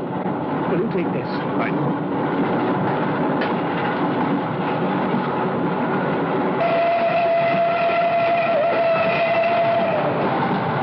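Steam train running with a steady rumble. About two-thirds of the way through, its whistle starts as one long steady note that holds on.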